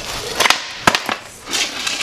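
Skateboard on a hard store floor during a trick attempt: the wheels roll and the deck clacks against the floor several times, the loudest knock just under a second in.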